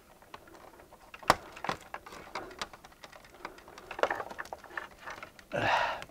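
Scattered light clicks and ticks of an antenna coax cable's connector and wires being handled and fitted onto a controller's input port by hand, the sharpest click about a second in.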